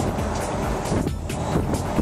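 Steady wind and road noise in the open cabin of a moving 2014 Jaguar F-Type Convertible with the top down, with background music with a beat playing over it.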